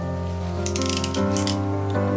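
Background music with steady sustained notes, joined from about half a second in by a run of short clicks and scratches as a cardboard box is handled and cut at with a snap-blade utility knife.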